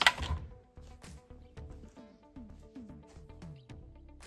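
Background music, fairly quiet, with a repeating pattern of short falling low notes about three times a second.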